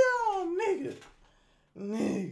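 A high-pitched, squealing laugh: one falling squeal that trails off about a second in, followed after a short silence by a lower groaning laugh starting near the end.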